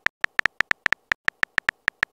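Keyboard typing sound effect of a texting app: short, crisp clicks, one per letter, about seven a second at an uneven pace, as a message is typed.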